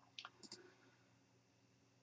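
A few faint clicks of a computer mouse in the first second, then near silence.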